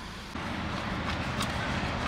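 Steady low background noise, a faint hum with hiss and no distinct event, stepping up a little in level shortly after the start.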